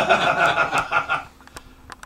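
A man's voice making a harsh, raspy sound for about a second and a half, demonstrating the high, nasty extreme-metal vocal wanted for the take, followed by a couple of faint clicks.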